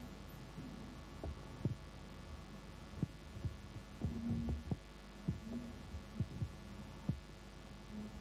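Irregular soft low knocks and thumps over a steady low hum, with a brief cluster of thumps about four seconds in.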